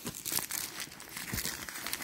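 White paper stuffing inside an opened mini backpack crinkling and rustling as hands push into it, a dense run of irregular small crackles.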